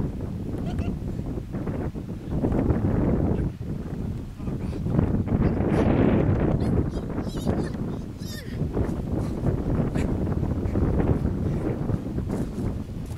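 Wind buffeting the microphone in uneven rumbling gusts, with footsteps and rustling through dry cut brush and debris.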